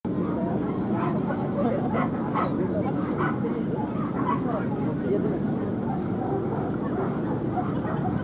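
Steady background chatter of many people, with a dog giving several short barks in the first half.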